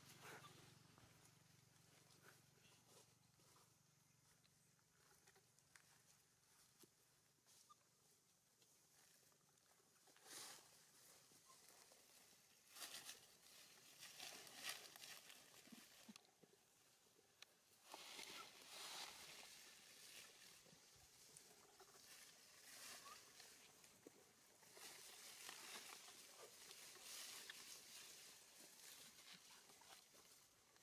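Near silence with faint, scattered rustling of dry leaf litter. A few slightly louder rustles come about ten, thirteen and eighteen seconds in.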